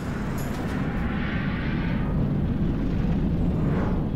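A deep, rocket-like rumbling sound effect in a TV title sequence, steady in the bass, with a hissing swell in the middle.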